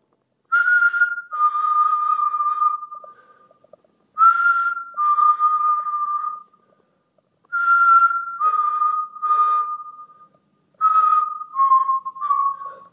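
A person whistling a two-note call four times, roughly every three seconds. Each call is a short higher note that drops to a longer, held lower note, with breathy air noise at its start.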